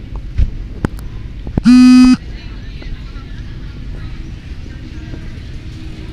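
A single short, loud car-horn honk about two seconds in, lasting about half a second, after a few sharp clicks.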